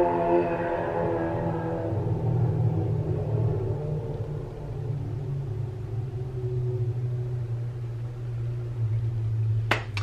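Motorcycle engine running outside, heard through the walls: its higher engine note fades away over the first couple of seconds, leaving a steady low rumble. A single sharp click comes just before the end.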